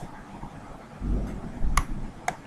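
A single sharp computer-mouse click about three-quarters of the way through, after a brief low rumble of desk handling.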